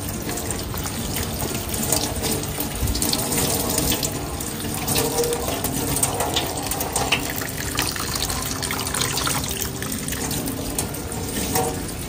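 Tap water running steadily into a stainless steel sink and through a mesh strainer, splashing as gloved hands rinse boiled rice straw clean.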